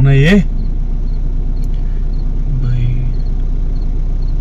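A car engine idling with a steady low hum, heard from inside the cabin, with a short voiced exclamation right at the start.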